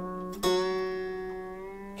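A new coated phosphor-bronze acoustic guitar string, part-wound on its tuning peg, rings with a low note that fades. About half a second in it is sounded again with a sharp attack and rings out, slowly dying away as it comes up to tension.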